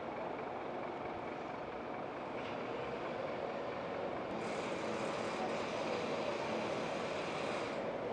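Steady city street traffic noise, a little louder and brighter in the second half.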